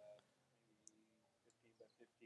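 Near silence: room tone, with a faint distant voice and a single tiny click just under a second in.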